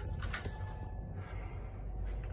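Steady low hum with a faint hiss inside an old Otis elevator car, waiting at the first floor before setting off.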